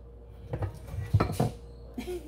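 A few short knocks and clunks, the loudest a little past halfway, from a metal griddle (comal) being handled on an electric coil stove and a metal tortilla press being set down.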